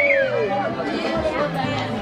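Dance music with a bass line playing under loud crowd chatter and voices. A long falling note ends about half a second in.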